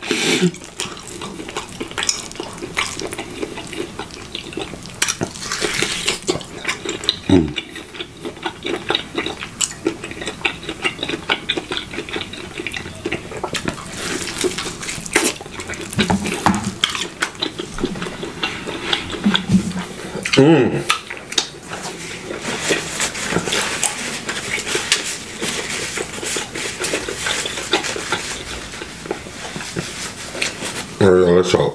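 Close-miked chewing of a tomahawk ribeye steak eaten off the bone: irregular mouth clicks and chewing noises throughout, with a few short hums and a louder burst about two-thirds of the way through.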